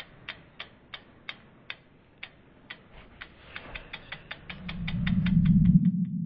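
Logo-reveal sound effect: a run of sharp clock-like ticks that quickens in the second half, under a low whooshing swell that builds toward the end.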